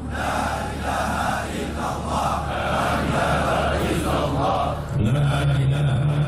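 A large group of men chanting Islamic dhikr together in unison. Near the end, one man's low voice stands out above the group.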